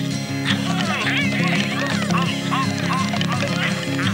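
Cartoon soundtrack: music with a rapid run of short, quacking squawks from a cartoon character over it, starting about a second in.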